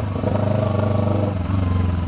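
Kawasaki Ninja 250R's parallel-twin engine running at low, steady revs while riding slowly, heard loud through an aftermarket Atalla exhaust that has been knocked out of place and blows like a straight pipe.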